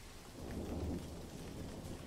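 Low rumble of thunder over steady rain, a storm sound effect. The rumble swells about half a second in, then eases.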